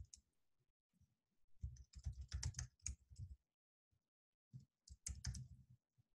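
Typing on a computer keyboard: two quick runs of faint keystrokes, separated by a short pause.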